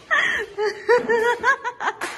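A person laughing in a run of quick, high-pitched bursts.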